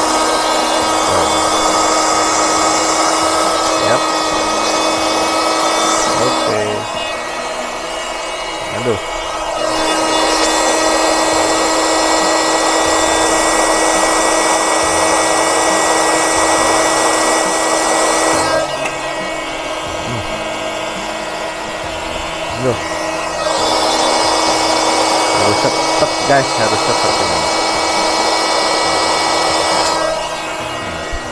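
Small electric air pump running steadily with a high, constant motor whine while it inflates an inflatable fish toy. The sound dips and changes twice, for a few seconds each, about seven seconds in and again at about nineteen seconds, then comes back to full strength.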